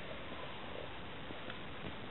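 Faint steady hiss of room tone and recording noise, with no distinct sound event.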